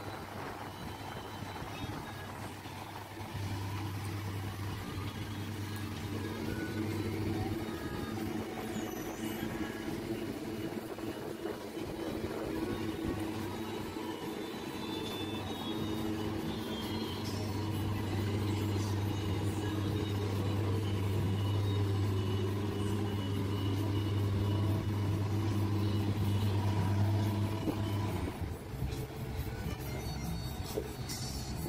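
An engine running steadily with a low, even hum. It sets in a few seconds in, grows louder in the second half and drops away just before the end.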